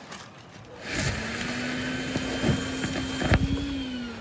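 Vacuum cleaner running to suck a pull string through buried PVC conduit. A steady motor hum with rushing air starts about a second in and fades out at the end, with a few sharp knocks along the way.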